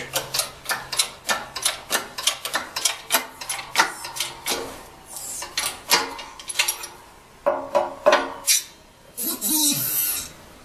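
Hand-pumped hydraulic bottle jack on a shop press, clicking quickly as its handle is worked, about three clicks a second, then slower and irregular, as the ram drives the crimping tool to finish crimping a vacuum pump diaphragm. A louder rasping noise comes near the end.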